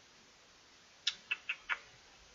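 Four quick, sharp clicks of a computer mouse about a second in, roughly a quarter second apart, as the page on screen is scrolled down.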